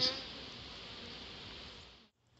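Honeybees of a freshly hived swarm buzzing over the open hive box, a steady hum that fades out near the end.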